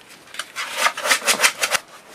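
A puppy playing, making a quick run of scratchy rubbing noises, about seven strokes a second, from about half a second in until just before the end.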